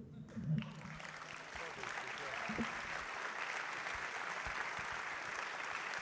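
Audience applauding, building up over the first second and then holding steady, with a few brief low thumps.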